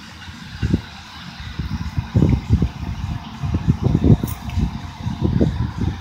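Wind buffeting the microphone in irregular low rumbling gusts, stronger from about two seconds in.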